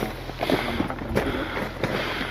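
Wind buffeting the microphone on an open mountain trail, with scattered clicks of footsteps and trekking poles on loose volcanic rock.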